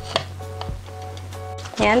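Soft background music with a few light clicks and taps from a spoon scooping sticky corn flour dough out of a mixing bowl.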